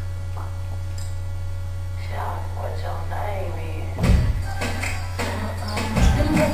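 Steady low electrical hum on the recording, with faint voices in the room after about two seconds. About four seconds in, music starts with a heavy bass hit.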